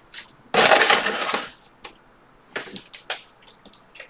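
Trading-card pack wrapper crinkling loudly for about a second as it is torn open, then a few light clicks of cards being handled.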